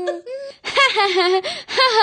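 A high voice wailing in repeated crying cries, about one a second, each rising and then falling in pitch.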